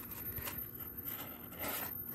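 Faint rubbing and light scraping as a hand grips and moves an air conditioner's insulated refrigerant line set, with a few small ticks.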